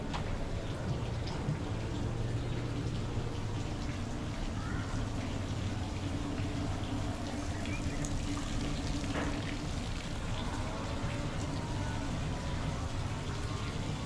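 Steady outdoor ambient noise with a low hum underneath and a few faint, brief sounds over it.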